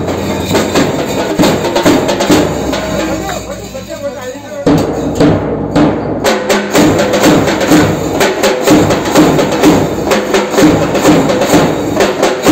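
Several hand-held drums beaten with sticks in a fast, steady rhythm by a small drum group. The drumming dips briefly about four seconds in, then comes back loud.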